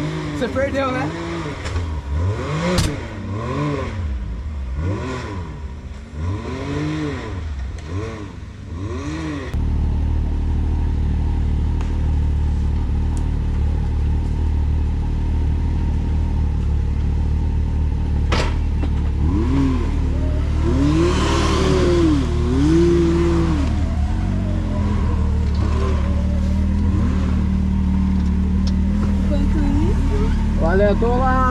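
Can-Am Maverick X3 turbocharged three-cylinder engine revved up and down again and again, about once a second, as the buggy claws up a muddy climb. About a third of the way in a steady low engine rumble takes over, with more revving past the middle.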